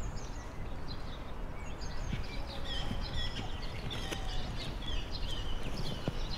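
Birds chirping in many short calls over steady low outdoor background noise.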